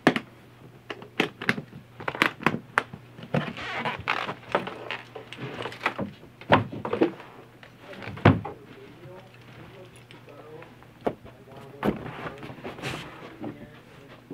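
Hardshell guitar case being latched and handled, a quick run of clicks and knocks. Then come two heavier thumps, the second the loudest, and softer knocks and rustling as cases and cardboard guitar boxes are moved.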